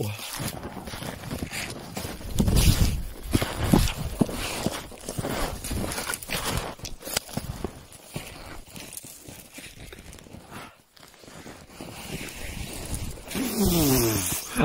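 Snowshoes crunching and thudding through deep snow in quick, irregular steps on a steep descent, with the heaviest thuds a few seconds in.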